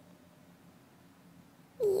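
Faint room tone with a low hum. Near the end a woman says "yeah" in a high voice that falls in pitch.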